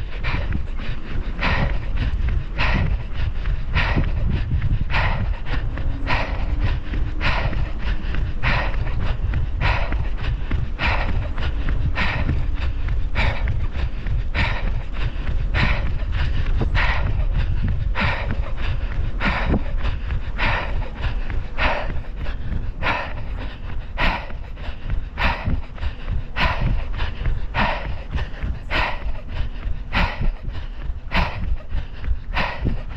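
Person panting hard after sprinting, in rapid, regular heavy breaths, a little more than one a second, over a steady low rumble.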